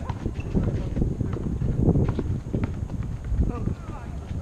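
Basketball bouncing and sneakers stepping on an outdoor asphalt court: a run of irregular knocks, with players' voices faintly under it.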